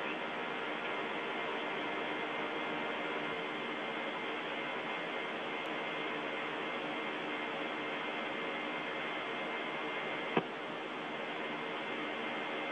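Steady hiss of an open air-to-ground radio channel from the Soyuz cabin, with faint steady hum underneath and a single click about ten seconds in.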